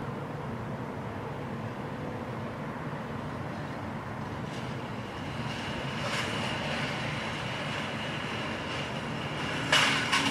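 A car rolls slowly across an asphalt parking lot pushing a metal shopping cart caught on its front bumper, the cart rattling and scraping along the pavement. A thin, high scraping tone joins about halfway through, and a louder clatter comes near the end.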